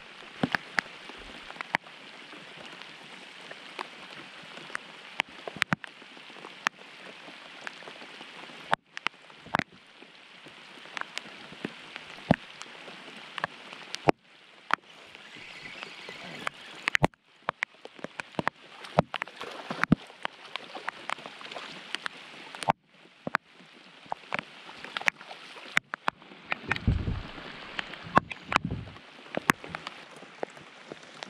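Steady rain falling on lake water, an even hiss with frequent sharp ticks of drops striking close by. A few low thumps near the end.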